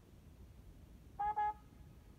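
Trumpet playing two short notes on the same pitch, one right after the other, about a second in.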